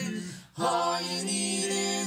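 A cappella vocal group singing wordless close-harmony chords. One chord is held, breaks off briefly about half a second in, and then a new sustained chord follows.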